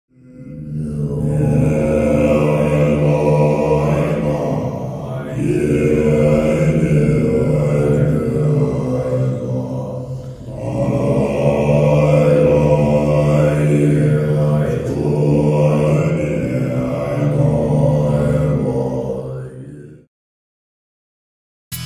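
Deep, droning chant of a mantra, sung in long phrases of about five seconds with short breaks between, the vowel sounds gliding over a steady low pitch. It fades in at the start and cuts off abruptly at the end.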